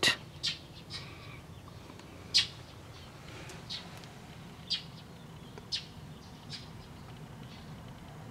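A bird chirping now and then: about six short, high chirps at irregular intervals of a second or so, over faint background noise.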